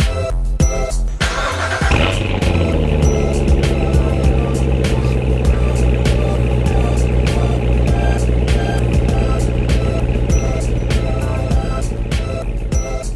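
2017 Chevrolet Corvette Z06's supercharged 6.2-litre V8 starting: it fires about a second in, the revs flare and then drop into a steady idle. Background music plays over it.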